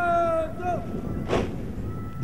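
A long, drawn-out shouted parade drill command, ending with a short dip in pitch, then a single sharp crack about a second later.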